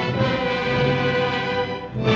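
Orchestral film score playing held, sustained chords, dipping in loudness briefly just before the end.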